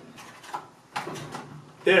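A nylon zip tie pulled tight through a catalytic heater's side vents against a wire dog crate, with two short zipping rasps about half a second and a second in.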